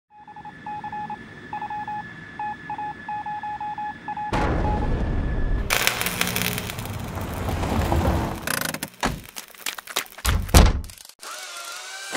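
A sound-effects sequence: an electronic beep pulsing on and off in an irregular pattern, then a loud rushing noise from about four seconds in, then several sharp thuds near the end.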